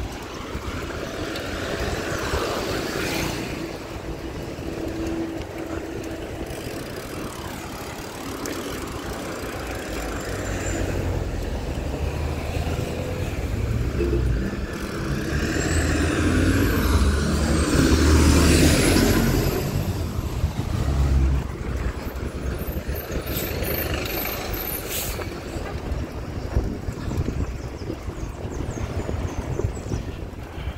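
Street traffic with a city bus passing close by; its engine rumble builds over several seconds, is loudest a little past the middle, then fades.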